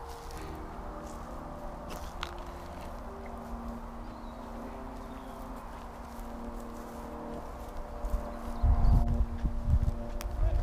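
Footsteps walking through long grass, over a steady low rumble that grows louder near the end. A faint steady hum sits underneath.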